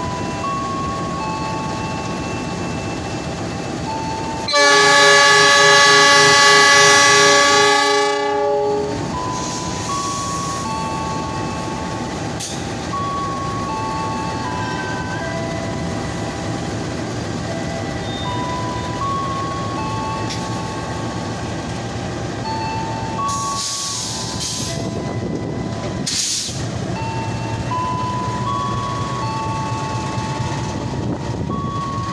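KAI CC206 (GE C20EMP) diesel-electric locomotive sounding its horn in one long blast of about four seconds, starting a few seconds in, then its engine running as it pulls the train out of the station.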